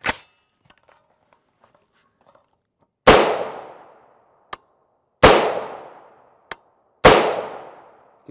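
Three rifle shots from a 16-inch AR-15 firing .223 Remington 55-grain FMJ, about two seconds apart, each followed by an echo that dies away over about a second. A faint tick falls between the shots.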